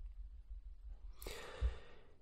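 A man drawing a breath through the mouth before speaking: low room tone for about a second, then a soft in-breath with a brief low bump in the middle of it.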